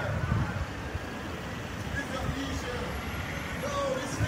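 Delivery van's engine and tyres as it pulls forward from the curb, a steady low rumble, with faint talking voices under it.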